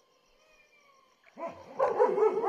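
Near quiet, then from about a second and a quarter in, loud animal calls repeat in quick succession.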